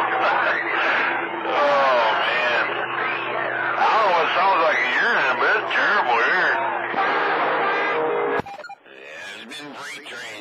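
Garbled, overlapping voices of CB operators heard through a CB radio receiving skip on channel 28, narrow and thin like AM radio. The loud signal cuts off abruptly a little over eight seconds in, leaving fainter voices.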